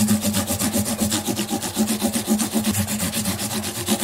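Fine 600-grit sandpaper rubbed quickly back and forth over a guitar's metal frets, in even strokes about eight a second. It is rounding off and smoothing the fret crowns to a near-polish after levelling.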